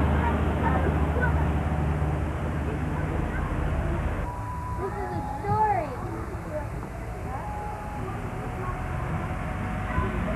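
Outdoor background of people's voices, with a steady low rumble under them that drops away about four seconds in. One voice rises and falls more clearly about five seconds in.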